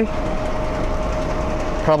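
Steady mechanical hum with one constant mid-pitched tone over a low rumble, like a running fan or motor.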